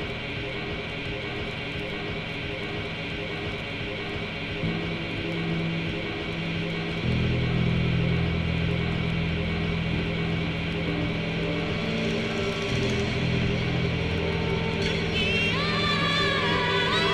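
Instrumental intro of a rock band's song: a dense, sustained wash of held notes. A low bass part comes in about five seconds in and swells louder around seven seconds. Near the end a wavering, vibrato-laden high lead line enters.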